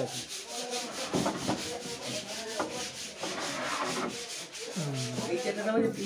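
Wood being sanded by hand, a steady rasping of quick, evenly repeated strokes that goes on throughout, with faint voices under it and a man speaking near the end.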